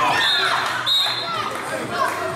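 Players' voices calling out in an echoing sports hall, with a handball bouncing on the hall floor and two brief high-pitched squeaks.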